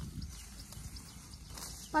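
Faint rustling and snipping of green fodder stalks being cut by hand with a sickle, with a few weak ticks over a low steady rumble.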